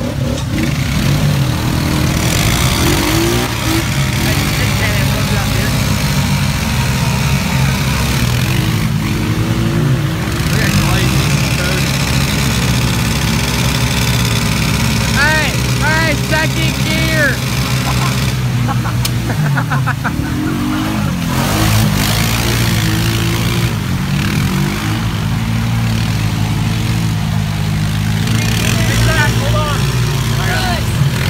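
Several ATV engines running and revving under load as a four-wheeler stuck in deep mud is pulled by a tow strap from two other ATVs.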